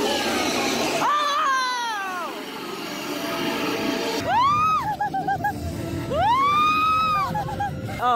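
Long, high-pitched screams on a dark ride: a falling wail about a second in, then two long cries about four and six seconds in, each rising and falling away, over a low rumble.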